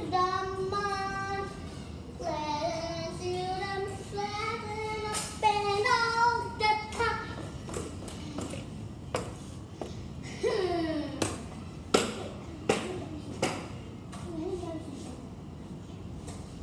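A young girl singing long held notes without clear words for about the first seven seconds, then short sliding vocal sounds broken by a run of sharp, separate smacks.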